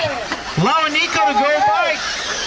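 A man's voice talking, the race announcer's commentary, with the words not made out.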